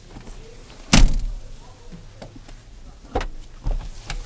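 Rear seat of a 2005 Honda CR-V being folded and tipped forward: a loud clunk about a second in, then two lighter knocks a little after three seconds as the seat moves on its hinges and latches.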